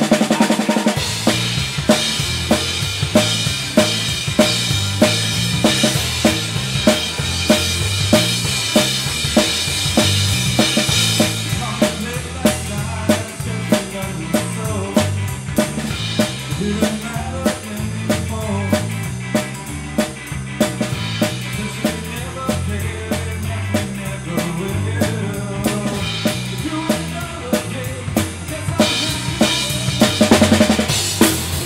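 Live rock band playing a ska-punk cover, heard close to the drum kit: a steady beat of kick, snare and rim hits over electric bass and guitar. Bright cymbal wash rings for the first ten seconds or so, thins out, and comes back near the end.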